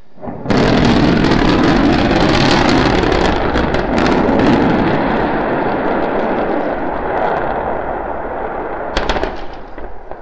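SpaceX Starship SN9 prototype exploding as it hits the landing pad, unable to slow its descent. A sudden loud blast about half a second in turns into a long crackling rumble that slowly fades, with a sharp crack near the end.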